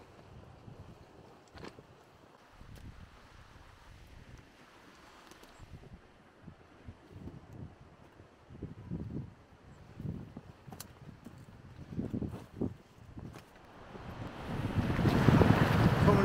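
Wind buffeting the microphone in fitful low gusts, then a loud rushing noise building near the end.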